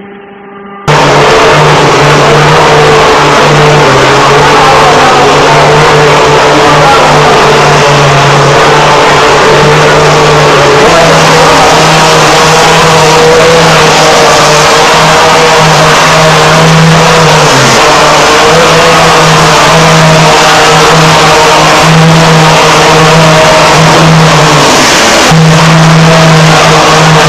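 Loud, steady machinery noise of mortar plaster spraying: a dense hiss with a low, slightly wavering motor hum. It starts suddenly about a second in and keeps on without pause.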